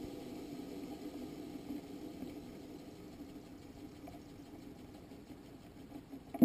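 Faint steady hum with a few soft ticks, picked up by the onboard camera on a rocket stage in flight.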